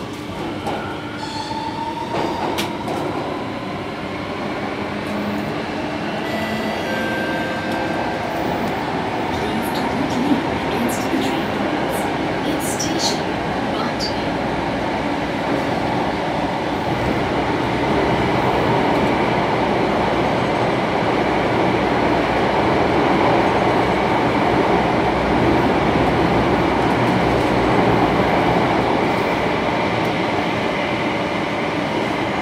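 MRT metro train heard from inside the carriage, its running noise building as it gathers speed and then holding steady. A few brief high-pitched squeaks come about halfway through.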